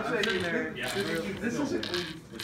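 A man talking quietly, his words too low to make out.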